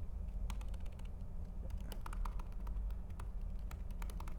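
Laptop keyboard being typed on: a dozen or so short, irregular key clicks, some in quick clusters, over a low steady room hum.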